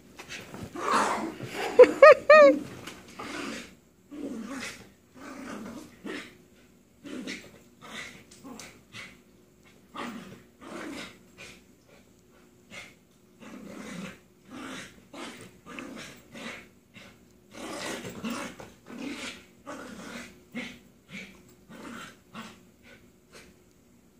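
Two dogs, an Icelandic Sheepdog and a bichon-poodle mix, play-growling in rapid short bursts as they wrestle, with a few loud high yips about two seconds in.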